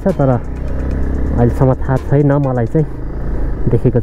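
A man's voice talking in short stretches over the steady low rumble of a motorcycle riding along a gravel road.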